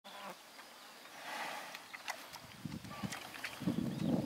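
Insects buzzing close by, growing louder and lower-pitched in the last second and a half.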